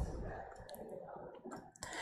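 A pause with faint room noise and a few small, faint clicks.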